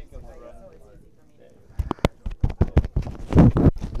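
Microphone handling noise: a clip-on mic being fitted, giving a fast run of knocks and rubbing thumps that starts about two seconds in and grows heavier near the end.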